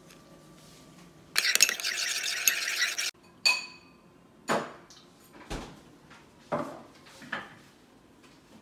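A metal spoon stirring and scraping sauce in a ceramic bowl for under two seconds, with small clinks, stopping abruptly. Then a single ringing clink and a few softer knocks of tableware, about a second apart.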